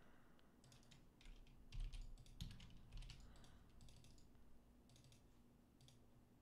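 Faint, irregular keystrokes on a computer keyboard with a few mouse clicks, as CAD commands are typed and objects picked.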